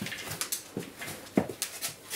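A dog whimpering a few short times, each sound dropping in pitch, the clearest about one and a half seconds in, among light clicks and knocks.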